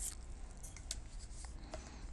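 A few faint, sharp clicks and light rustles, about half a dozen scattered through, over a low steady hum.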